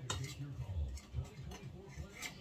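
Metal table knife clicking and scraping against the side of a metal bundt pan as it is run around the baked cake to loosen it, a few separate ticks about half a second apart.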